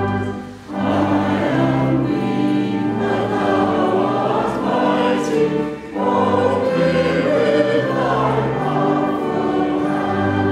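Church congregation and robed choir singing a hymn together over sustained low accompaniment notes, with short breaks between lines about half a second in and near six seconds.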